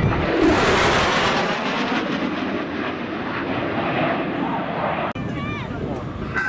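F/A-18 Super Hornet's twin turbofan jet engines on a near-sonic high-speed pass. A sudden, very loud blast of jet noise hits at the start with a falling pitch, then settles into a long, steady roar that cuts off about five seconds in.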